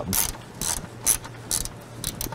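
Hand ratchet with a 10 mm socket driving an M6 bolt into a car's plastic fan shroud, clicking in about four short strokes.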